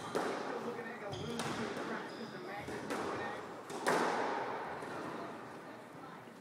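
Squash ball being struck by rackets and hitting the court walls during a rally: sharp cracks roughly every second and a half, each ringing off the walls of the enclosed court.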